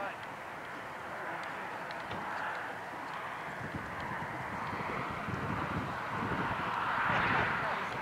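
Hoofbeats of a trotting horse on a sand arena footing, soft repeated thuds that come through more plainly in the second half. They sit under a steady rushing background noise that swells near the end.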